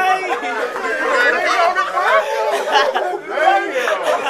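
Loud, overlapping chatter of several men's voices talking and calling out over one another.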